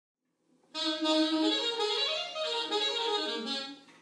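Solo saxophone playing a short melodic phrase, starting under a second in and fading away just before the end.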